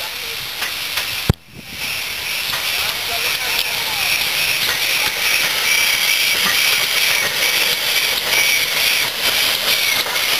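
Steam locomotive GWR Manor Class 4-6-0 No. 7812 Erlestoke Manor drawing a train closer, with a steady hiss of steam that grows louder as it nears. A sharp click and a brief dropout come about a second in.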